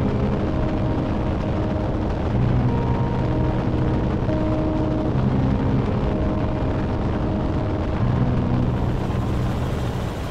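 Helicopter in flight: a steady, dense rumble of rotor and wind noise. Held musical notes that change pitch every second or so sound under it.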